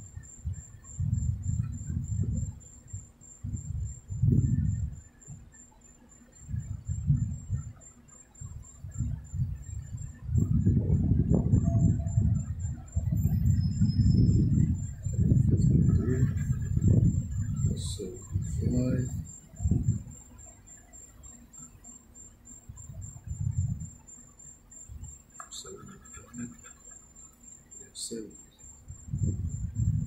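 A coin scraping the latex coating off a paper scratch-off lottery ticket on a table, in bursts of rapid rubbing strokes with short pauses; the longest stretch of scratching falls in the middle. A faint steady high whine runs underneath.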